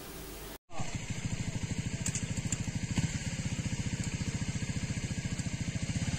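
A small engine running at a steady idle, starting abruptly less than a second in, with an even rapid pulse of about ten beats a second.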